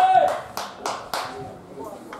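Spectators' hands clapping in a rhythm of about three claps a second, with a long, held shout from the stands ending just as the claps go on. The claps grow fainter and sparser toward the end.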